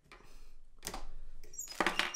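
Fly-tying thread being pulled tight after a whip finish: faint handling and rubbing noise, with a sharp click a little under a second in and a brief, louder sound near the end.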